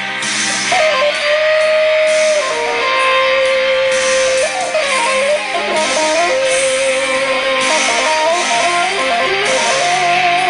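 Electric guitar playing a lead melody of long held notes that bend and slide between pitches, with vibrato on the sustained notes.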